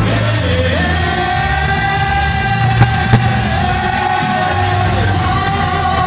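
Live vocal performance: a voice holds one long sung note over loud backing music with a heavy bass. Two short clicks come about three seconds in.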